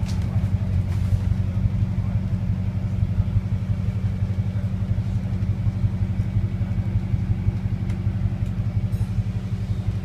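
Double-decker bus engine running, a steady low drone with a fast, even throb, heard from inside the upper deck.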